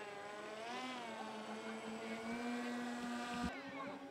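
Radio-controlled model aircraft's motor and propeller droning in flight. Its pitch rises and falls with throttle, then holds steady. There is a short knock about three and a half seconds in.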